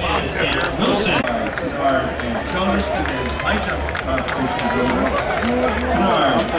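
A public-address announcer speaking over stadium loudspeakers, with a steady low hum underneath.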